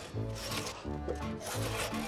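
Two-man crosscut saw being pulled back and forth through a thick log, each stroke a rasp of steel teeth cutting wood.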